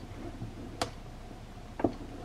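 Two short, sharp clicks about a second apart, hands or a ring knocking on the plastic sewing-table surface while a fabric strip is folded and finger-pressed, over a low steady room hum.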